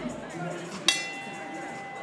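A bell struck once about a second in, ringing on and slowly fading with a clear tone, the bell that signals the start of an MMA round.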